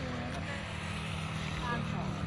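A steady low drone, with faint voices in the background.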